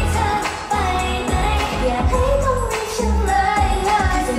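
Live pop song: female group vocals singing a melody over a backing track with a regular bass beat.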